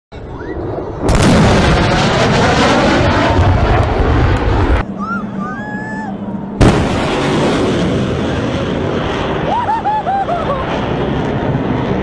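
Fighter jets making low, fast passes. A sudden loud boom about a second in is followed by a jet roar; after a short lull, a second sharp boom near seven seconds is followed by another roar.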